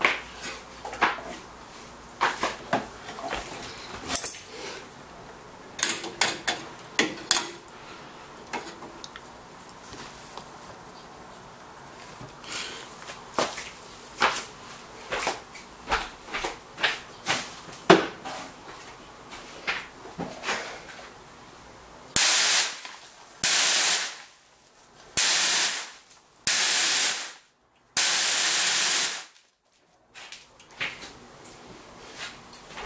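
Scattered knocks and clicks for about twenty seconds, then five short, loud blasts of spray from a Nitrous Express N-tercooler intercooler sprayer, each under two seconds and cut off suddenly. The spray bar is jetting onto the intercooler core and chilling it freezing cold.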